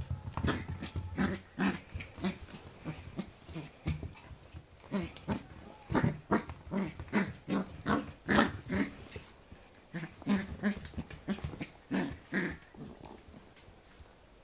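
Pembroke Welsh corgi puppy growling in play while mouthing a hand: a rapid series of short growls, about two or three a second, easing off for a moment around four seconds in and stopping near the end.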